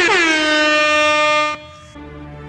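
Air horn sound effect: the end of a rapid run of short stuttered blasts settles into one long, loud, steady blast that cuts off sharply about a second and a half in.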